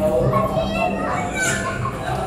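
Children's voices chattering and calling out, over steady background music.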